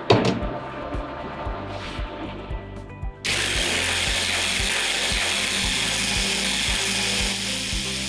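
Electric hand blender with a chopper-bowl attachment switched on about three seconds in, then running steadily as it blends almond cream with vegetable broth into a sauce.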